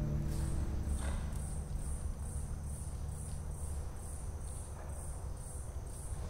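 A cricket chirping in a steady high-pitched rhythm, about two chirps a second, over a faint low rumble. The last guzheng notes fade out in the first second.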